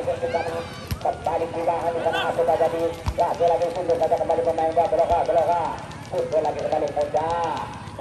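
A match commentator's voice carried over a public-address loudspeaker, thin and narrow-sounding, talking almost without pause. A few dull thumps come through about one, three and five seconds in.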